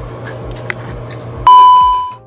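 A loud, steady electronic bleep tone is edited onto the soundtrack. It starts abruptly about one and a half seconds in and fades out over about half a second. Before it there is only a low room hum with a few faint knocks.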